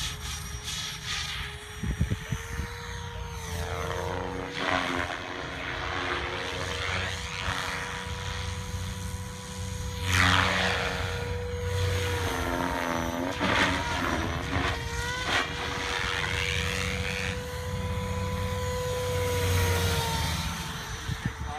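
SAB Goblin 700 KSE electric RC helicopter with a Scorpion brushless motor flying aerobatics: a steady whine from motor and drivetrain with rotor-blade noise, sweeping up and down in pitch as it passes by several times, about 4, 10 and 13 seconds in.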